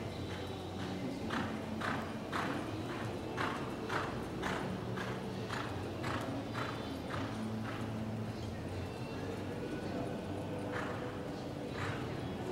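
Horse's hoofbeats loping on arena dirt, about two beats a second. They pause for a few seconds past the middle and come back near the end, with faint voices in the background.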